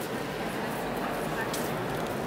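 Steady murmur of many visitors talking at once inside a large stone church, with a brief click about one and a half seconds in.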